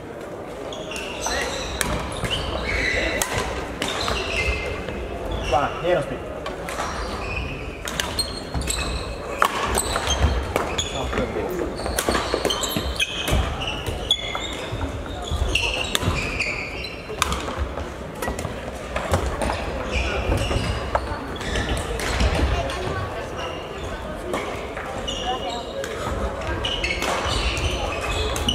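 Badminton play in a large, echoing sports hall: repeated sharp racket strikes on shuttlecocks and footfalls on the hall floor, over indistinct background voices.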